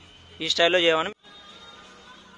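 A man's voice: one short, drawn-out word about half a second in, which cuts off suddenly just past a second, leaving a faint steady background hum.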